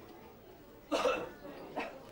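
A person's voice: a short vocal sound about a second in and a briefer one near the end.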